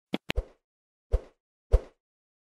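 Sound effects for an animated subscribe button. Two quick, sharp mouse-click sounds are followed at once by a short pop. Two more pops come about half a second apart near the end.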